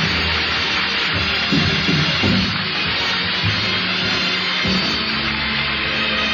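Studio orchestra playing the opening music of a 1949 radio broadcast, with the dull, treble-less sound of an old recording. The band moves to a new chord about three-quarters of the way through.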